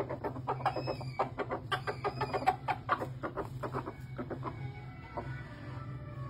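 Red junglefowl clucking in a quick run of short calls that thins out after about four seconds, over a steady low hum.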